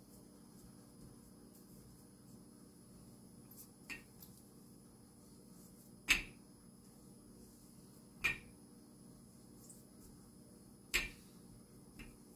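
Wooden rolling pin rolling out sourdough dough on a silicone baking mat: a few short knocks, about four, the loudest about halfway through, over faint room tone.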